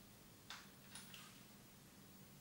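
Near silence: room tone with a faint steady low hum, broken by a few faint short clicks, one about half a second in and two close together around one second in.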